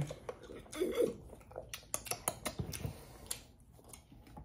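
Quiet, light clicks and taps from small handling noises, with a brief murmured voice about a second in.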